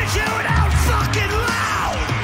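Live punk rock band playing at full volume: electric guitar, bass and drums, with the lead singer yelling into the microphone. One shout slides down in pitch near the end.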